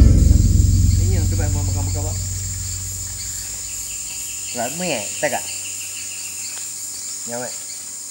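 Rainforest ambience: a steady, high-pitched insect chorus, broken by a few short wavering calls about a second in, around five seconds and near the end. A deep low rumble at the start is the loudest sound and fades away over the first three seconds.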